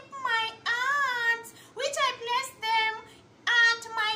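A woman crying aloud: high, wavering wails broken by short pauses, with a quieter dip before a last cry near the end.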